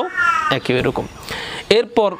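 A short, high-pitched animal cry falling in pitch at the start, amid a man's speech.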